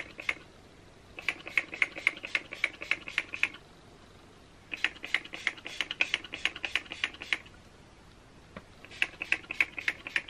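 Spray bottle of leave-in conditioner spritzed in quick runs, about five sprays a second, dampening the hair. There are three runs: one about a second in, one about five seconds in, and one starting near the end.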